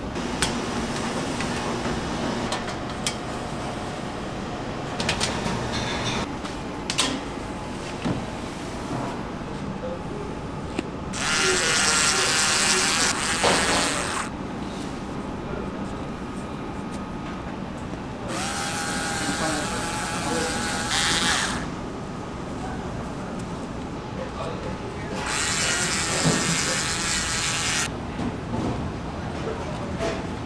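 Small handheld electric drill running in three bursts of about three seconds each, boring a hole through the top crust of the baked breads for the cream filling.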